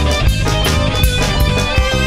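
Instrumental passage of a rock song: guitar over a drum kit keeping a steady beat of about four hits a second.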